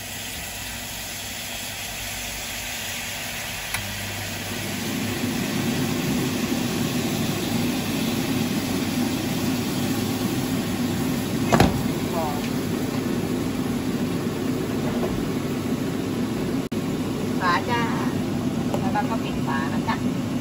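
Hot water poured into a hot nonstick frying pan of gyoza, sizzling and hissing as it hits the pan, then boiling hard around the dumplings. The bubbling is louder and steady from about four seconds in; this is the steam-frying stage. A single sharp knock comes about halfway through.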